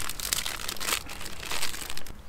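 Thin plastic snack wrapper crinkling as it is peeled open by hand, the crackle swelling several times.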